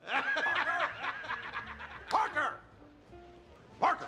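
A man laughing hard in a run of loud ha-ha peals over the first couple of seconds, with another short burst a moment later and again near the end. Faint held music notes sound in the gaps.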